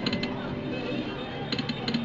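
Video slot machine's electronic reel-spin sound effects during a free spin: quick runs of rapid clicks near the start and again near the end, over the machine's game music.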